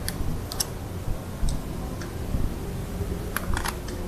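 Bonsai scissors snipping at a wired branch: a string of short, sharp clicks, bunched closer together past three seconds in, over a low steady rumble.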